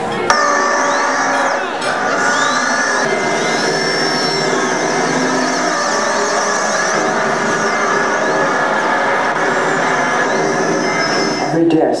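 Film soundtrack: a sustained ambient drone of many held tones with sweeping high glides over it. It starts suddenly as the title card comes up and cuts off shortly before the narration begins.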